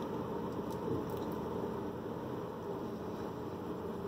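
Steady low rumble and hiss inside a pickup truck's cab, with no marked changes.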